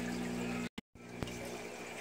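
Faint, steady trickle of water from a hang-on-back aquarium filter's outflow spilling into a partly drained tank, over a low hum. The sound drops out to silence for a moment near the middle, and a single faint click follows shortly after.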